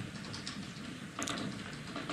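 Quiet room tone with a few faint clicks and taps, one a little more distinct about a second and a quarter in.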